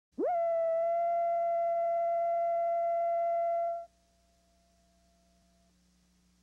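Steady electronic reference tone from a videotape leader. A single pitch slides up into place at the start, holds level for about three and a half seconds, then cuts off suddenly, leaving a faint hum.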